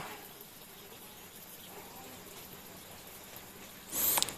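Faint, steady bubbling of air from a submersible aquarium pump's air line rising through the tank water, over a low hum.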